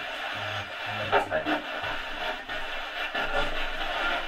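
Portable radio giving steady static hiss with faint, broken snatches of voices and music coming through.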